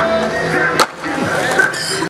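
A single sharp skateboard clack, a board striking concrete, just under a second in, over background music.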